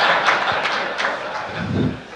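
Audience laughing and clapping in response to a joke, the sound dying down toward the end.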